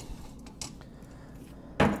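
Metal clamps clattering as one is pulled from a pile under the workbench: a faint click about half a second in, then one loud clank near the end.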